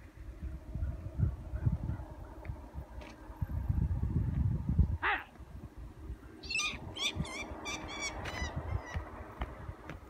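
Wind buffeting the microphone throughout. About five seconds in comes a single sweeping note, then a bird gives a quick run of about seven high, repeated calls.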